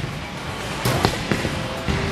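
Bowling alley din: a bowling ball rolling down the lane over background music, with several sharp knocks and clatter scattered through the two seconds.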